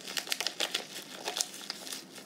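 Plastic salt bag crinkling as it is squeezed and shaken to tip salt out, hard to get out: a run of irregular sharp crackles, loudest in the first second and a half.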